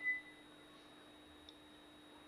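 A short high beep at the very start, then faint room tone with a steady electrical hum and one faint click about one and a half seconds in.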